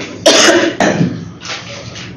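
A woman coughing into her hand: two sharp coughs about half a second apart, then a weaker one.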